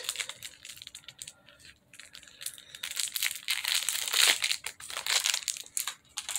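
Clear plastic wrapper peeled off a Trident gum pack, crinkling and crumpling in the hands in irregular bursts, busiest in the second half.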